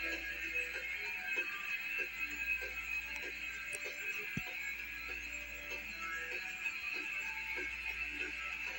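Music playing through a television's speaker.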